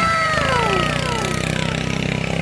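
A man's long, drawn-out "whoa" of amazement, falling steadily in pitch over about two seconds, over a steady low engine hum.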